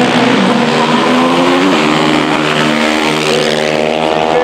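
Several racing quad bike (ATV) engines running together in a steady, overlapping drone, their pitch shifting as the riders work the throttles.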